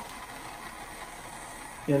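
Jeweller's gas torch flame burning with a steady hiss as it heats a silver bezel before soldering. A man's voice starts near the end.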